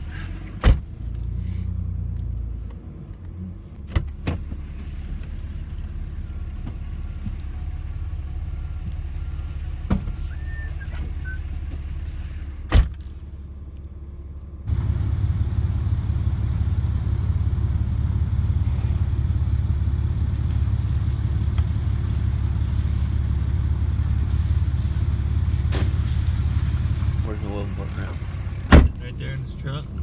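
Steady low engine and road rumble of a pickup truck, heard from inside the cab, broken by a few sharp thumps. About halfway through the rumble jumps louder and steadier, then drops back near the end.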